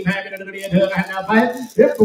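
Auctioneer's rapid bid-calling chant.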